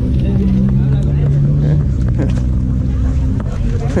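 Motorcycle engine running steadily, a low even hum whose pitch shifts slightly about two seconds in.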